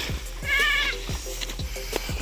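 A goat bleating once, a short, high, quavering call about half a second in.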